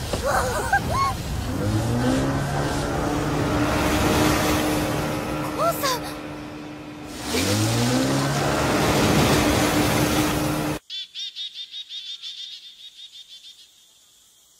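Animated action sound effects: small boat motors rise in pitch twice and hold a steady whine over loud rushing wind. About eleven seconds in, this cuts abruptly to a quiet forest with insects chirping in a fast, even rhythm.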